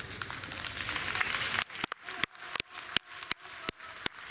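Hall ambience, then from about halfway in a few spectators clapping, sharp separate claps about three a second.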